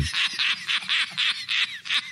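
A rapid run of short, high-pitched squawking calls, about seven a second.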